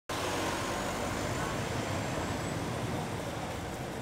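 Street noise with an ambulance van's engine running as it drives past close by, over a steady rumble of the busy street.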